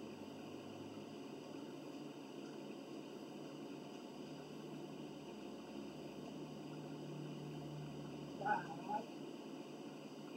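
Quiet room tone with a brief high-pitched vocal sound, two short parts, near the end.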